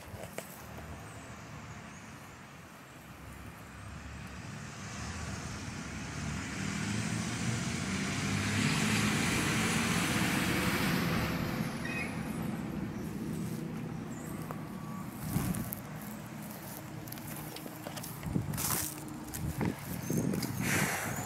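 A vehicle passing by, its noise swelling over several seconds to its loudest about halfway through and then fading away.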